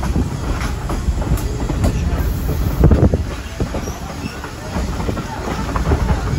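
Vintage 1928 streetcar rolling along the track: a steady rumble of steel wheels on rail, with knocks and clatter as it runs over rail joints, the heaviest just before the halfway mark.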